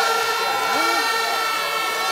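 A man's voice over a public-address system, with several steady ringing pitches held underneath it.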